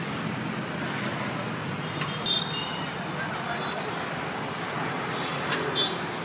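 Steady roadside traffic noise, with a couple of short metallic clinks from stainless-steel food containers, about two seconds in and again near the end.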